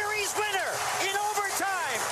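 Hockey broadcast goal call: an excited male voice shouting over a cheering arena crowd.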